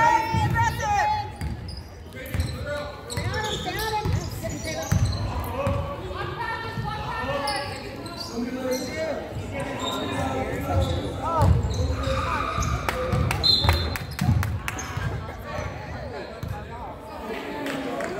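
A basketball dribbled and bouncing on a hardwood gym floor, with players and spectators calling out over it, echoing in the gym.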